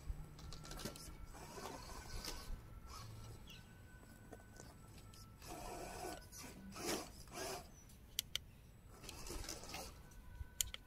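Absima Sherpa RC crawler's small electric motor and gearbox whirring faintly in short bursts as it crawls onto the tree roots, with a couple of sharp clicks a little after the middle.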